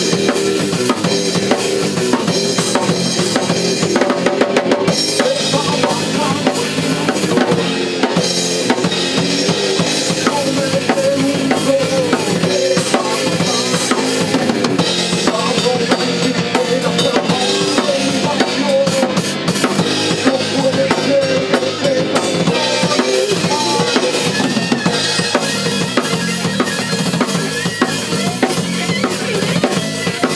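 Heavy metal band playing live: electric guitar over a full drum kit with bass drum and snare, loud and unbroken throughout.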